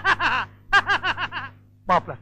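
A person laughing in two quick runs of short, falling 'ha-ha' bursts, with a brief burst near the end, over a faint steady low hum.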